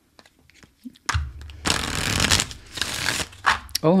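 A deck of tarot cards being shuffled by hand, in two bursts of rapid card riffling a little after a second in and again near three seconds. A short spoken 'oh' comes right at the end.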